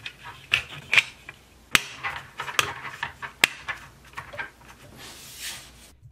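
Small plastic clicks, taps and rattles as a plastic HO scale lumber load is handled and set into a plastic model centerbeam flatcar, with two sharper knocks about two seconds in and a second and a half later, and a brief soft rustle near the end.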